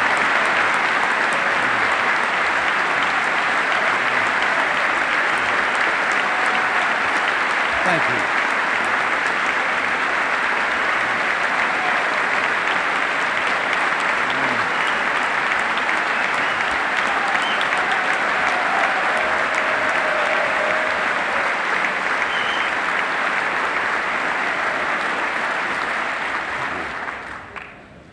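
Long applause from a large audience in a big hall, a dense steady clatter of many hands with a few faint voices in it, dying away over the last couple of seconds.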